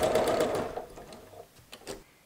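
Domestic sewing machine with a walking foot stitching through layered quilting fabric at a rapid, even rate, then slowing and stopping about a second in. A couple of light clicks follow near the end.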